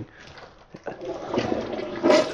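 Toilet being flushed: a click a little under a second in, then water rushing into the bowl and building.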